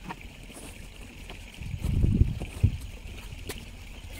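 Wind buffeting the microphone in a low rumble that rises and falls about halfway through, over a steady high hiss, with a few sharp taps and scrapes of a steel trowel on cement mortar.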